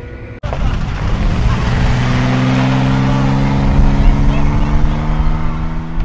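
A vehicle doing a burnout: its engine is held at high revs, creeping slowly up in pitch, over a loud rushing noise of spinning tyres. It starts abruptly about half a second in.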